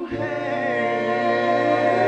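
Male vocal group singing sustained harmony without words, a cappella, with a steady low bass note underneath and one voice gliding over the held chord.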